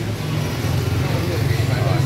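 Indistinct voices talking over the steady low hum of a motor vehicle engine running on the street.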